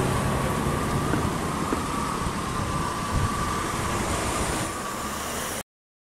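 Bus engine running with road noise and a steady high whine over it, cutting off suddenly near the end.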